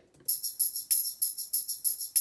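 A tambourine percussion loop sample played back on a computer: a quick, steady rhythm of jingling hits, several a second.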